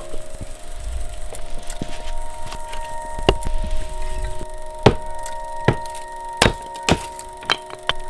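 Axe strikes on firewood: about seven sharp knocks at uneven intervals through the second half, over held chords of sustained music.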